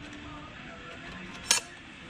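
A single sharp metallic clink about one and a half seconds in, as a steel clutch plate is dropped into place in a KTM 300 TPI's clutch basket.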